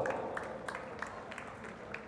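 A few scattered claps and sharp knocks, irregular and about three a second, over a fading murmur in a large hall.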